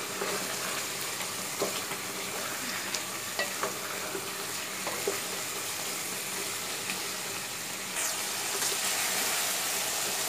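Chicken curry masala sizzling in hot oil in a pot while a wooden spatula stirs it, with a few short scrapes and knocks of the spatula against the pot. The masala is being fried on high heat until the oil separates. The sizzle grows a little louder about eight seconds in.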